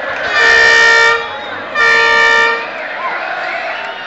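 Two loud, steady horn blasts, each just under a second long and about half a second apart, over crowd hubbub and voices.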